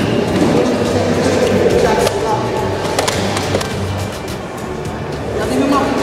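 Background music with steady low notes, with a couple of sharp knocks about two and three seconds in.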